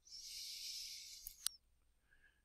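A soft hiss for about a second and a half, ending in two quick computer-mouse clicks.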